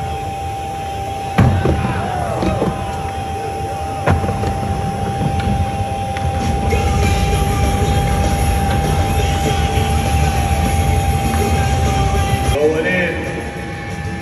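Skateboard wheels rumbling on a wooden vert ramp during a run, with two sharp knocks of the board, about a second and a half and about four seconds in. The rumble is steady, then cuts off suddenly near the end.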